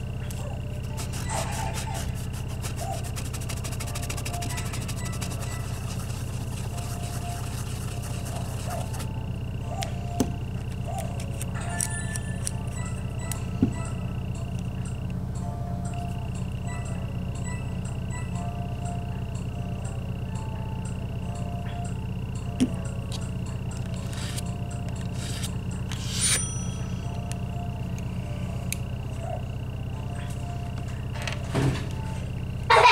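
A steady electrical hum with a constant high whine, broken by a few sharp clicks and taps as a scraper and stamper work on a metal nail-stamping plate. The clearest clicks come about halfway through and twice more near the end.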